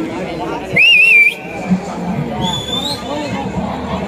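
A whistle blown in one short, loud, warbling blast about a second in, then a fainter, higher whistle about two and a half seconds in, over steady crowd chatter.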